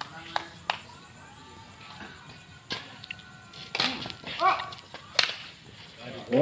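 Badminton rackets striking a shuttlecock during a rally: a handful of sharp cracks spaced about a second apart, the one about five seconds in the loudest.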